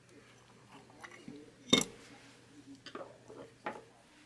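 Small hard clicks and taps of a screwdriver, a tiny screw and nut being worked on a circuit board, with one louder knock about two seconds in and a few lighter clicks after it.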